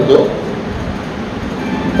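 Steady background noise with an even rumble, with faint voices just at the start.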